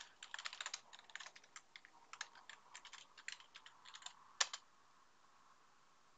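Typing on a computer keyboard: a quick run of keystrokes for about four seconds, ending in one sharper key press, then the typing stops.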